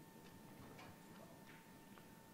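Near silence in a conference room: a faint steady electrical whine, with a few faint, scattered clicks from audience response clicker keypads being pressed as votes come in.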